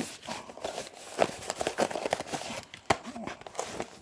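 Packaging rustling and crinkling as a light bulb is pulled out of its cylindrical cardboard carton, with a few sharp clicks and knocks. The loudest click comes about three seconds in.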